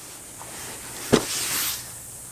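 Cardboard shipping box being handled and turned upright: a single knock about a second in, then a short rustling scrape of cardboard.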